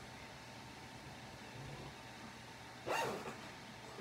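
Quiet room tone, broken about three seconds in by one short vocal sound.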